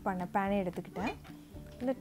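A woman's voice speaking briefly over steady background music.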